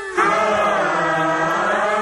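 Film song music: a chorus of voices comes in about a quarter second in and holds one long sustained chord, dipping slightly in pitch and rising back.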